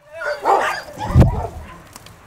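Young beagle-type dogs making short, wavering yelping sounds while playing, with a loud low thump a little over a second in.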